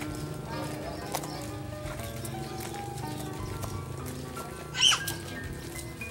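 Background music with held notes. About five seconds in, a brief, loud sound rises sharply in pitch.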